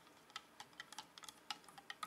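Faint, irregular light clicks of a plastic MRE spoon knocking against the inside of a coffee mug while stirring instant coffee, about five or six clicks a second.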